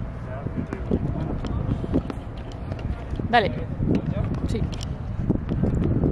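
Tennis balls being struck by rackets and bouncing on a hard court, heard as scattered short sharp pops over a steady low outdoor rumble, with a brief shout of 'Dale' a little past the middle.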